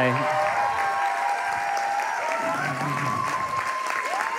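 A congregation applauding steadily in a large hall, in response to a call to honour someone.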